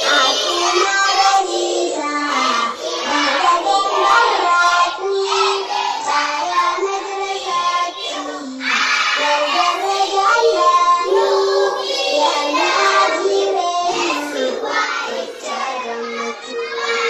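Children's voices singing a song together, a melody of held notes that moves step by step without a break.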